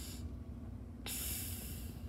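A girl blowing air out through pursed lips: a short puff at the start, then a hiss of breath lasting about a second from about a second in.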